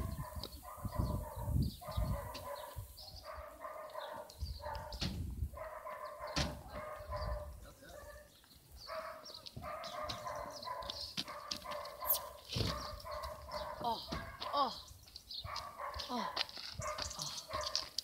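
Animal calls repeating in the background, each lasting up to about a second, with low rumbling gusts of wind on the microphone in the first several seconds.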